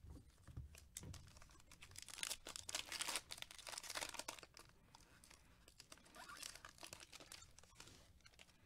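A 2020 Contenders Football hobby pack's foil wrapper being torn open and crinkled. The tearing is loudest from about two to four seconds in, with softer crinkling near the end as the cards come out.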